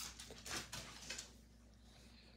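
A short run of faint, soft taps and patter: a cat's paws scampering across a hardwood floor as it chases a tossed piece of kibble.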